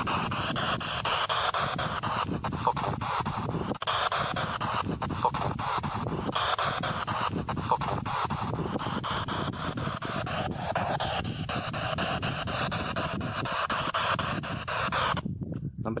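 Spirit box radio sweeping through stations: continuous hissing static chopped by rapid switching clicks, with brief voice-like fragments in it, one of which is taken for swearing ("f**king" or "f**k you"). It cuts off about a second before the end.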